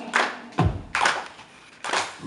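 Four sharp hand claps keeping the beat, the first three close together and the last after a longer gap, each with a short ring of room echo.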